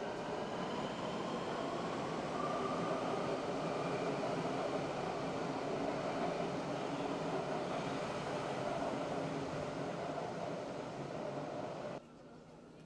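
Electric metro train moving along the platform of an underground station: a steady running noise, with a faint whine that rises in pitch over the first few seconds.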